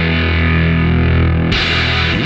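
Hard-rock band ending: distorted electric guitars and electric bass hold a sustained chord. About a second and a half in, a sudden loud final hit comes in and rings on.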